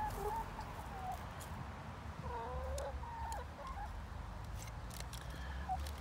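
Hens making soft, drawn-out wavering calls: one right at the start and a few more about two to three and a half seconds in.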